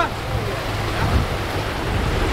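Whitewater rapids rushing steadily, with wind buffeting the microphone.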